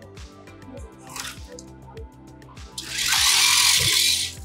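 FRC competition robot's three-roller over-the-bumper intake running as a foam ring note is fed in: a loud, hissing burst starts abruptly about three seconds in and lasts about a second, over background music.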